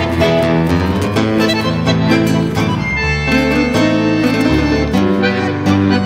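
Bandoneón, guitar and piano trio playing a tango. The bandoneón holds long chords over sustained low notes, with quick struck and plucked notes on top.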